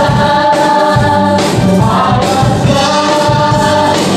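Live church praise band playing a gospel worship song: several singers on microphones singing together in long held notes, over electric guitars, bass, keyboard and drum kit, amplified through the hall's loudspeakers.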